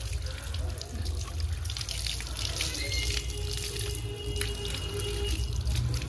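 Hose water pouring over a wet Rottweiler's coat and splashing onto a concrete floor as the shampoo is rinsed out, a steady running, dripping wash.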